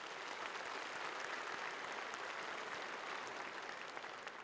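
Audience applauding steadily, a dense spread of many hands clapping.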